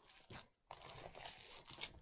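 Faint squishing and crackling of hands kneading a moist ground venison meatloaf mixture in a bowl, with a few small clicks and a short gap of silence just after half a second in.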